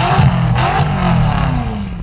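Car engine revving, with its pitch swooping up and down: a sound effect with a loud burst near the start.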